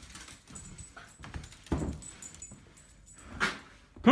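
A small dog moving about on a hardwood floor: faint, scattered clicks and taps, with a couple of soft thumps.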